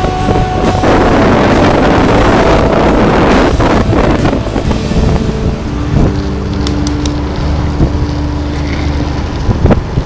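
Wind rushing over the microphone of a camera moving downhill at speed behind longboarders, strongest in the first few seconds. A steady mechanical drone holds through the second half, and music fades out at the very start.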